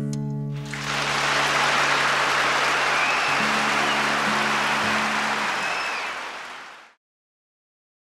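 The last acoustic guitar chord rings out and gives way, about half a second in, to a concert hall audience applauding, with a few whistles. The applause fades and cuts to silence about a second before the end.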